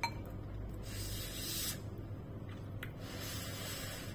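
A short clink of a metal fork against a ceramic spoon, then two hissing slurps of noodles being sucked into the mouth, the first about a second in and the second about three seconds in.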